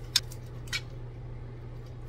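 A metal fork clinking against a steel cooking pot while stirring boiled pasta: a sharp click just after the start, another about three-quarters of a second in and a few fainter ticks, over a steady low hum.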